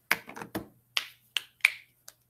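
A quick run of about six sharp clicks and taps at a computer desk, the loudest near the start and about one and a half seconds in.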